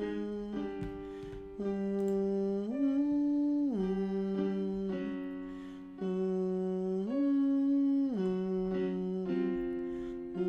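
A man's voice humming a vocal warm-up on an 'ng' sound. He holds notes about a second each and slides up and back down in a short pattern that repeats every few seconds, over the exercise's accompaniment.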